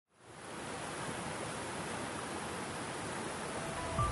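A steady, even rushing noise, like running water, that fades in quickly just after the start and holds level.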